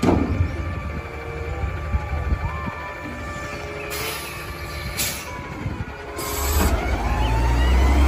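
Front-loading garbage truck running, its hydraulic arm whining as it lowers the carry can from over the cab, with a couple of sharp metal clanks about four and five seconds in. The engine revs up near the end.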